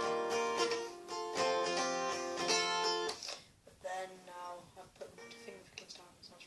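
Acoustic guitar fingerpicked: chords ring out for about three seconds, then a few softer plucked notes that fade toward the end.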